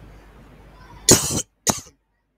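A person coughing twice, a longer cough about a second in followed quickly by a shorter one.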